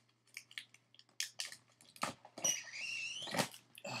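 Polaroid packfilm being pulled out of a converted Polaroid 110A/B camera: a few small clicks of handling, then about a second of rasping zip as the print is drawn through the spreading rollers, ending in a click.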